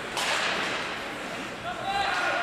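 A single sharp crack from the ice hockey play, with a short echo in the rink, followed near the end by a voice calling out.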